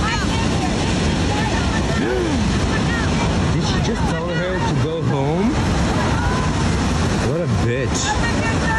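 Surf breaking on a sandy beach and wind buffeting a phone microphone, a steady loud rush, with a few short, unclear voices calling out over it about two, four to five and seven seconds in.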